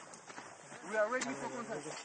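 A man's voice calling out in one drawn-out utterance that starts about a second in and falls to a held pitch, over faint outdoor field sound.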